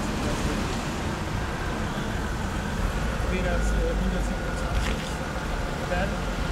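Steady background road traffic: a continuous rumble and hiss, with a faint passing-vehicle tone in the middle.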